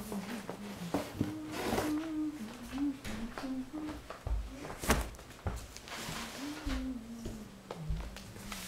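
A person humming a slow, wandering tune at a low pitch, with scattered clicks and knocks from objects being handled; the sharpest knock comes about five seconds in.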